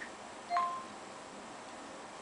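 iPhone Siri activation chime: a short two-note beep stepping up in pitch, about half a second in, as Siri is called up with the home button.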